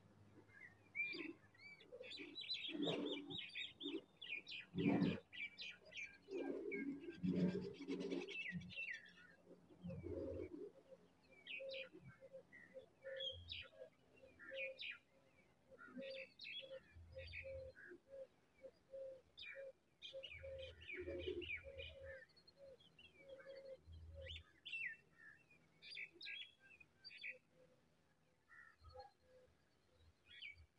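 Birds chirping, many short high chirps through the whole stretch, with a low single note repeated about twice a second through the middle.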